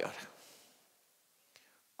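A pause in a man's speech: the breathy tail of a word fades out in the first half second, then near silence, with one faint click about a second and a half in.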